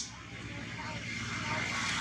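A motor vehicle engine running steadily nearby, growing slowly louder, over outdoor background noise with a few faint bird chirps.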